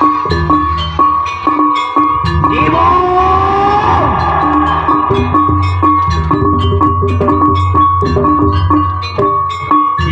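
Live jaranan ensemble music: drums and struck gong-like notes in a quick even rhythm over a held high tone, with a sliding pitch about three seconds in.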